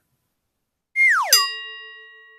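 Cartoon sound effect used as a joke sting: a tone that slides steeply down in pitch, then a bright bell-like ding that rings and fades away.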